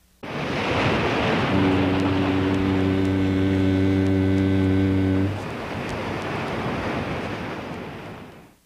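A low horn blast held for about four seconds over a steady rushing noise that starts suddenly. The rushing noise fades away slowly after the horn stops.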